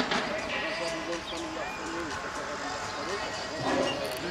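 Voices talking throughout, with a sharp knock at the very start and, near the end, the metal BMX start gate dropping as the riders roll off.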